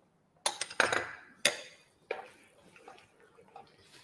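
Kitchen utensils clinking and knocking against a wok and small glass bowls: a few sharp strikes with a brief ring in the first two seconds, then fainter stirring sounds from a spatula in the simmering sauce.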